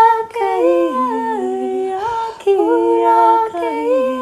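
Wordless light language singing by a woman's voice, unaccompanied and close to humming. Long held notes slide from pitch to pitch, at times in two-part harmony, with short breaths about half a second and two and a half seconds in.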